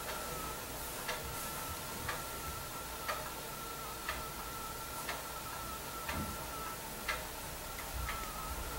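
A clock ticking, one tick about every second, over a faint steady high-pitched whine.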